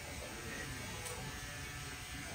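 Electric hair trimmer running with a steady buzz.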